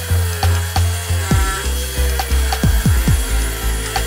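Table saw ripping a thick walnut board, the blade's cutting noise running continuously. Background music with a regular bass beat plays over it.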